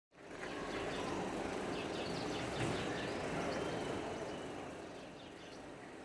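Steady outdoor background noise with a few faint bird chirps, easing down in level after about four seconds.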